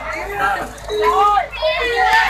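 Several people talking and calling out close by, over the chatter of a lively crowd.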